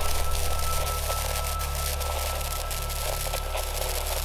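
A steady low drone with an even hiss over it, and a thin high tone that fades out about halfway through.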